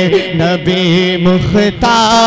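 A man's voice singing a naat in a drawn-out, melismatic line through a PA with added echo, over a steady held drone. The melody bends and wavers while the drone stays on one pitch, with a short break about one and a half seconds in.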